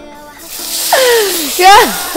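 Water poured into a hot pan of caramelizing sugar, hissing and sputtering sharply. It starts about half a second in and swells.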